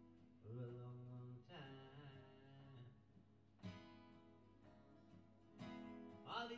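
Acoustic guitars playing a quiet instrumental passage of a folk song, with sustained chords and new notes struck every second or two.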